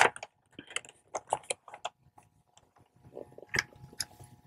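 Wrapping paper crinkling in short, scattered crackles as it is pressed and folded around a gift box, with a small cluster of them near the end.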